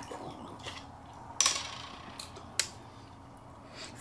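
Quiet handling and drinking sounds from a glass lemonade bottle: a few light clicks, and a short louder burst about one and a half seconds in that fades quickly.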